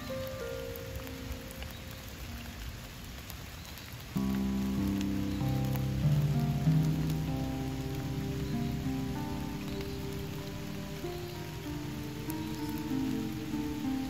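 Steady rain falling on standing floodwater, under gentle instrumental music. About four seconds in, the music becomes louder and fuller, with sustained low chords.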